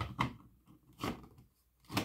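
A few short, sudden knocks and rustles about half a second to a second apart: handling and movement noise of someone moving around with the camera and the smoke detector.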